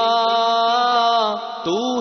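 A singer chanting a devotional Urdu naat verse, holding one long drawn-out note for about a second and a half, then sliding up in pitch into the next word near the end.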